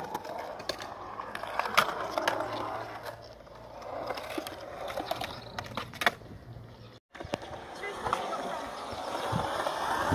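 Skateboard wheels rolling over smooth concrete in a skatepark bowl, the rolling noise swelling and fading as the board runs through the curved transitions, with a few sharp clicks.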